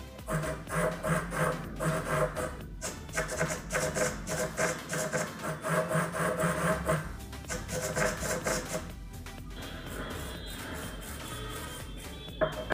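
Small hobby servo whirring in rapid, irregular short bursts as it is driven back and forth by the joystick on a homemade radio transmitter. The bursts stop about seven seconds in. Background music plays throughout.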